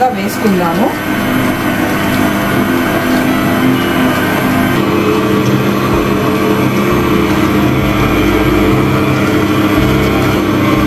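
AGARO Royal 1000 W stand mixer running: its motor hums steadily at a constant pitch as the dough hook turns through dry wheat flour in the stainless steel bowl.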